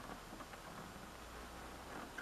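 Quiet room tone with a few faint ticks from the plastic chassis corner of a flat-screen TV being flexed by hand.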